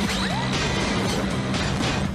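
Cartoon bumper soundtrack: music with crashing sound effects layered over it.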